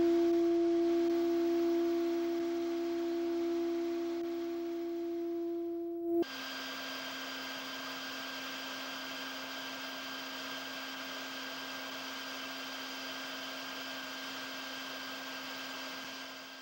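Steady electronic drone of pure tones: a strong low tone slowly fades. About six seconds in it switches abruptly to a thinner, higher set of steady tones over a hiss.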